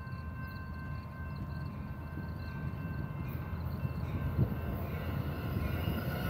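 Amtrak San Joaquins passenger train approaching, cab car leading with diesel locomotives pushing at the rear: a low rumble that slowly grows louder, with a faint steady high whine above it.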